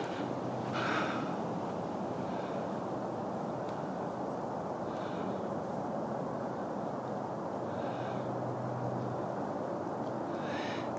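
A person breathing close to the microphone, a soft breath every two to three seconds over a steady hiss.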